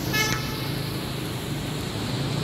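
A short car horn toot just after the start, over a steady wash of street traffic noise and falling rain.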